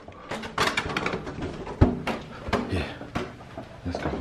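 Handling noise: a string of knocks, clicks and rustles as the recording camera is moved and set in place, with the sharpest knock about two seconds in.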